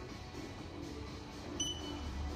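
Background music, with a single short electronic beep about one and a half seconds in as the teeth-whitening LED lamp switches on.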